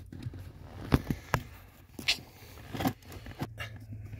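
A few short knocks and scrapes of a plastic brake light switch being shoved against its metal mounting bracket at the brake pedal, the switch not yet going in.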